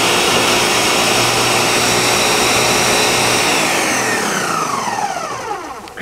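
Countertop blender running at full speed, puréeing an avocado and lime dressing until smooth, then switched off about three and a half seconds in, its motor winding down with a falling whine.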